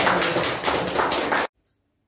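A small audience clapping, cut off suddenly about one and a half seconds in.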